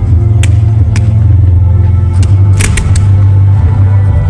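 Loud music with a heavy bass line, over which fireworks go off in sharp cracks: single reports about half a second and a second in, then a quick cluster of cracks between two and three seconds in.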